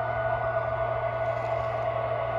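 Steady electrical hum with a constant mid-pitched whine from a powered O-scale model railroad layout.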